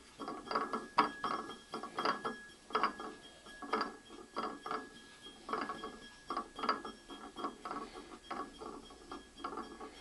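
A potter's banding wheel turned by hand in short, uneven pushes, clicking and rattling with each turn, roughly one to two a second.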